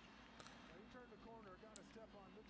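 Near silence, with faint speech in the background.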